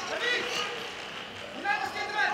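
Indistinct voices over a steady background murmur in a large hall, with two brief spells of voice, one just after the start and one near the end.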